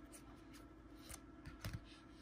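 Rigid plastic card holders (top-loaders) clicking and sliding against each other as basketball cards are flipped through by hand: a few faint clicks and rubs, the loudest a quick double click late on.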